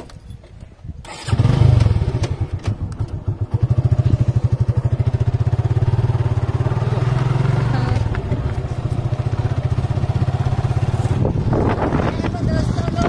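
Motorcycle engine catching about a second in, then running with a steady low pulsing beat as the bike rides along.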